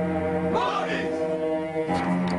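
Soundtrack music: a held, droning chord, with a chant-like voice rising and falling briefly about half a second in.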